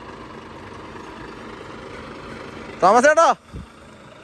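Volvo FH truck's diesel engine idling steadily, with a man's short loud call about three seconds in.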